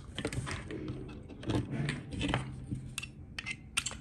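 Scattered small clicks and taps of a hex screwdriver and small screws and nuts being handled against a 3D-printed plastic part, irregular and spread through the few seconds.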